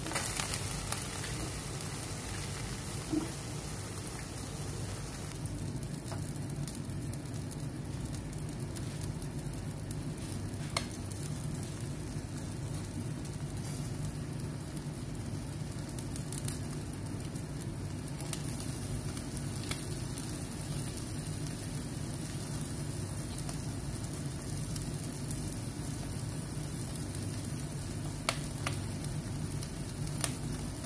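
Skewered minced camel kebabs sizzling steadily on an electric tabletop grill, with a few sharp clicks.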